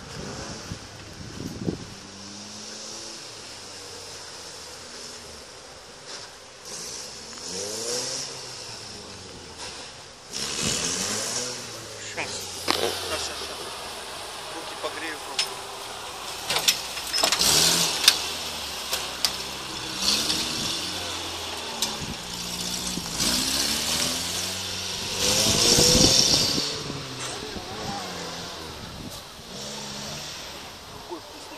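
Engine of an off-road 4x4 trial vehicle revving again and again, its pitch rising and falling in repeated surges as it works through a dirt section, with scattered knocks and clicks. The loudest surge comes a few seconds before the end.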